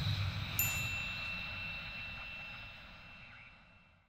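A single bright chime struck about half a second in. It rings on a few high tones and fades slowly away to near silence, the closing sting of a logo animation.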